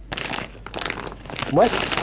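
A clear plastic bag of puffed chips crinkling as it is handled and turned in the hand: a run of small sharp crackles.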